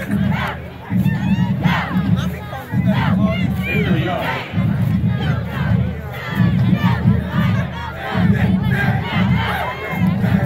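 A cheerleading squad yelling a cheer together in repeated rhythmic phrases, many voices shouting at once.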